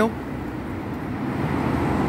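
Steady road traffic noise in a road underpass, slowly growing louder as a car approaches through the tunnel.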